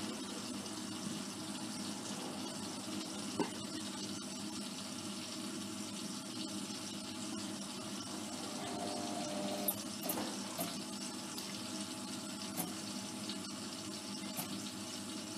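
Hotpoint Aquarius WMA54 washing machine running with a steady sound of water moving through it, broken by a few light clicks.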